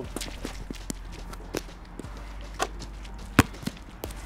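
A basketball bouncing on a wet outdoor court: a few separate thuds at uneven spacing, the loudest about three and a half seconds in.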